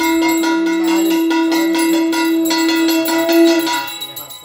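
Small brass puja hand bell rung rapidly and continuously, with a long steady held tone sounding alongside that breaks off near the end.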